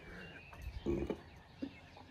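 Quiet outdoor background with a brief, faint low hum or murmur about a second in and a small tick near the end.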